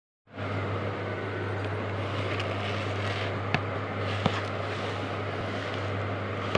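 Steady low hum over an even background hiss, with two brief clicks a little past the middle.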